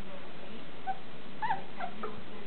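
Berger Picard puppies at play giving a few short, high yips and whimpers, the loudest about a second and a half in.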